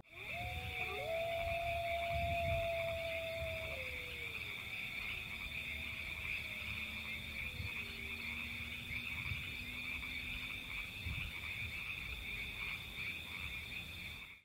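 Night-time lakeshore ambience: a steady, high-pitched chorus of calling frogs throughout. Over it, a long call is held for about three seconds, then slides down in pitch, and a fainter call follows it.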